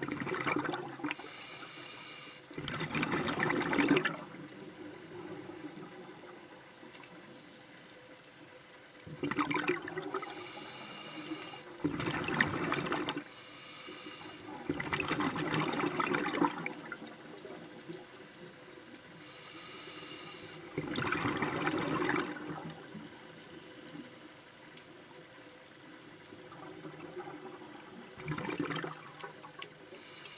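A scuba diver's breathing through a regulator underwater: each breath is a hissing inhalation followed by a rush of exhaled bubbles. About five breaths come a few seconds apart, with quieter water noise between them.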